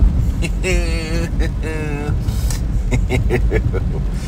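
Steady low rumble of a car cabin on the move, with a man letting out two drawn-out, wavering whiny moans in the first half.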